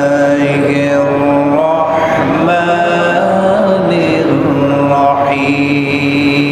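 A man's voice reciting the Quran in Arabic as a melodic chant (tilawah), holding long drawn-out notes with slow turns in pitch between them.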